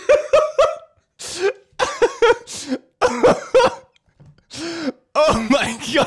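A man laughing hard in repeated short bursts, with pauses between fits.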